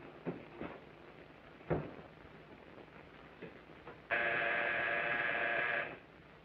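A few light knocks and clicks of objects handled on a kitchen counter. About four seconds in, an electric buzzer sounds once, a steady buzz of nearly two seconds that starts and stops abruptly.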